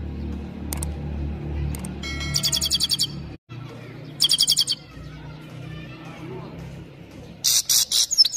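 Grey-headed goldfinch singing in short bursts of rapid, high twittering notes: one about two seconds in, a brief one about four seconds in, and a loud one near the end. A low steady hum runs underneath.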